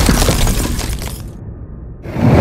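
Shattering and breaking sound effect, dense crackling debris over a low rumble, dying away over the second second with only a low rumble left near the end.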